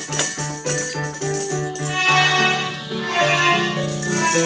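A children's melodica ensemble playing a tune in held, reedy notes, with percussion such as drums and tambourines striking along with it.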